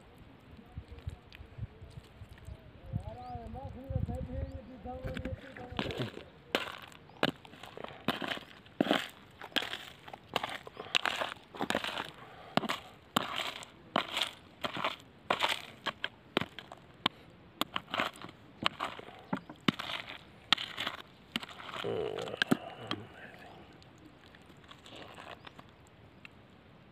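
Loose stones and gravel crunching and clacking as rocks are handled and stepped among: a quick, uneven series of sharp knocks, two or three a second, from about six seconds in until a few seconds before the end. Before that there is a low rumble.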